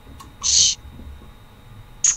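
A drink can opened: a faint click of the tab, then a short hiss about half a second in.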